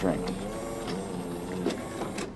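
Jura Impressa J9 superautomatic espresso machine running with a steady mechanical whir, with a light knock near the end.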